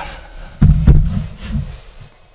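Handling noise from a camera being carried and repositioned: a sudden low thump a little over half a second in, a second knock just after, then a low rumble that fades away.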